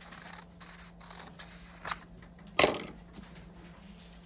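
Scissors cutting across a paper skirt pattern at the hip line: soft cutting and paper rustle, with two louder sharp snips a little after halfway, about two-thirds of a second apart, the second the loudest.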